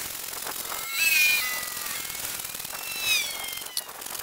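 Crosscut saw cutting through a buckeye log in steady strokes. Two pitched, gliding squeals stand out, one about a second in and one about three seconds in.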